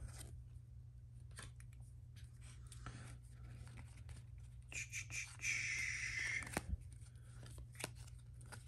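Stack of cardboard football trading cards being slid and flipped through by hand: faint clicks and rubs of card on card, with a louder scraping rustle of a card sliding across the stack about five seconds in.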